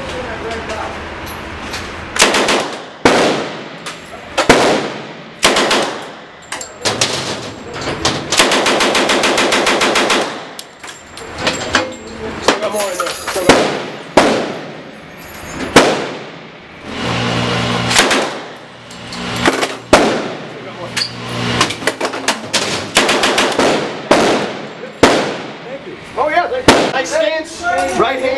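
Submachine gun fired in fully automatic bursts on an indoor range: many short bursts and a longer burst of about two seconds near the middle, each ringing off the range walls.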